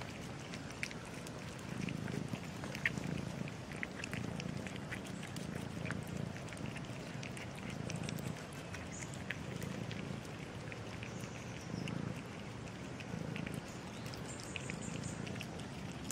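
Several cats eating wet food from a plastic tray: many quick, wet chewing and smacking clicks over a low, gently pulsing rumble.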